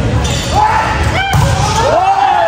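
A volleyball struck once with a sharp smack, a little past halfway through, amid voices.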